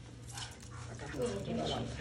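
A dog whimpering softly in the second half, while being bathed and lathered, over the wet rubbing of hands in its soapy fur.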